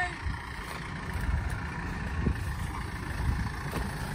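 A John Deere utility tractor's diesel engine running steadily as the tractor moves slowly, its sound mostly low-pitched.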